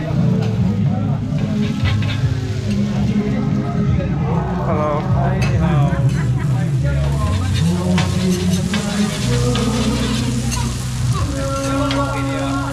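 Food sizzling on a flat gas griddle while metal spatulas scrape and tap against the plate, stirring and turning it, over background music.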